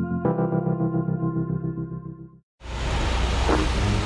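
Background music of sustained electric piano or synthesizer chords, changing chord just after the start and cutting off about two and a half seconds in. After a brief silence, steady ambient background noise follows.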